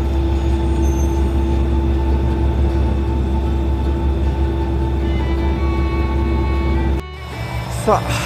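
Steady low rumble with a constant hum inside a diesel railcar, its engine running; the sound drops away about seven seconds in.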